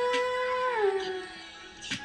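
A woman's singing voice holding one long, steady note that slides down in pitch and fades out about a second in. A short sharp noise comes near the end.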